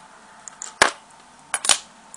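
Sharp clicks and taps from tools being handled at a fly-tying vise: a single click a little under a second in, then a quick pair of clicks near the end.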